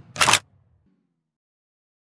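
Logo sound effect: one short, sharp shutter-like burst lasting about a quarter second, near the start.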